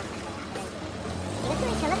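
Dump truck engine running steadily with its bed tipped up, revving higher about a second and a half in, with people talking over it.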